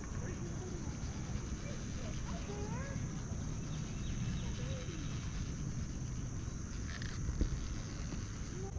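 Low wind rumble on the microphone during an open chairlift ride, under a steady high-pitched insect drone, with faint distant voices.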